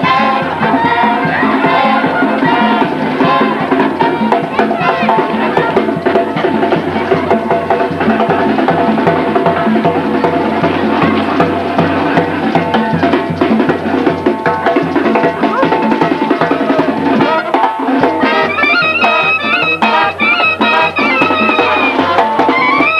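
Marching brass band playing in the street: sousaphone, trumpets, a bass drum and cymbals keeping a steady beat. Higher, brighter horn notes come in about 18 seconds in.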